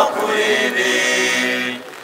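A church choir singing unaccompanied, holding one sustained chord that dies away near the end.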